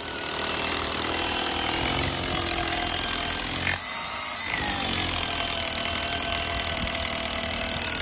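Cordless rotary hammer drilling a hole through a brick wall, running steadily with one brief let-up near the middle. To the person watching it sounds like its battery is dying.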